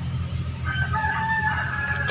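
A rooster crowing: one long drawn-out call starting about half a second in, over a steady low hum.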